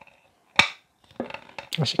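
A single sharp click about half a second in, from fingers gripping and working the small metal knob on the side of a Blue Yeti microphone's body; otherwise quiet.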